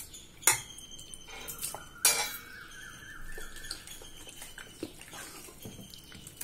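A metal spoon stirring thick batter in a stainless steel bowl, scraping and knocking against the sides. The two loudest clinks, about half a second and two seconds in, leave the bowl ringing briefly.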